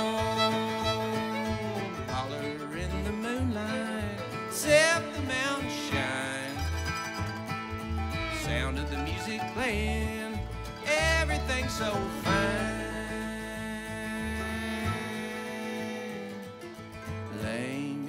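A live acoustic bluegrass band playing, with acoustic guitar and upright bass, and lines that slide up and down in pitch a few times.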